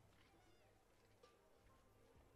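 Near silence: faint field ambience with a few faint scattered squeaks and sounds.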